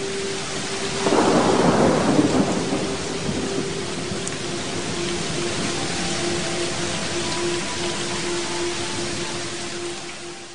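Steady rain with a rumble of thunder about a second in that swells and fades over a second or two. A faint steady tone hums beneath.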